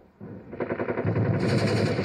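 Rapid machine-gun fire that starts about a fifth of a second in and grows louder, continuing as a dense rattle.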